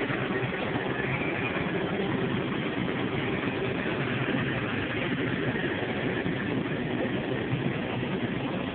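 Steady supermarket background noise: a constant mechanical hum and rumble with no break or sudden sound.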